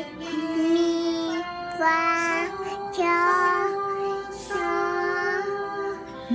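A young girl singing a slow melody, holding each note for about a second with short breaks between them.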